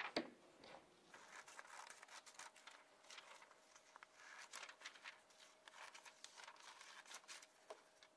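Scissors cutting through a sheet of white paper: a run of short, crisp, faint snips with paper rustling. There is a sharper knock at the very start.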